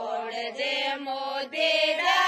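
Women singing a chant-like song together without instruments, their voices holding wavering notes.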